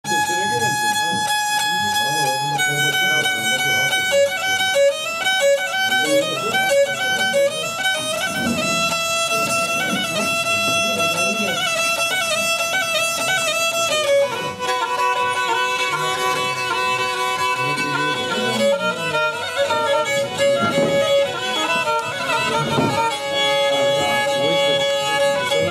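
Kemençe, a small bowed fiddle, playing a melody of long held notes broken by quick stepwise runs and trills, over the chatter of people in the room.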